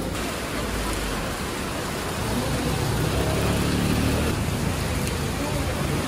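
Steady hiss of heavy rain, with faint voices in the background partway through.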